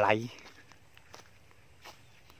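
A man's spoken word trailing off at the start, then a few faint, soft footsteps on dry grass and dirt.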